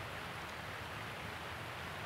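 Steady, even outdoor background hiss with no distinct sounds, during a pause in speech.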